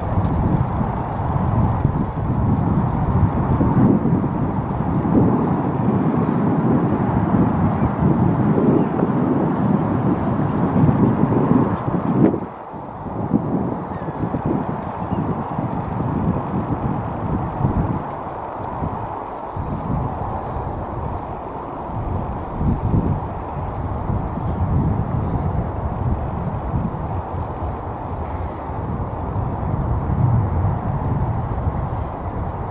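Wind buffeting the camera's microphone: a steady, low, gusting noise that drops away briefly about twelve seconds in.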